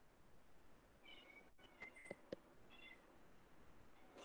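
Near silence: faint room tone with a few short, high-pitched chirping calls and three light clicks around the middle.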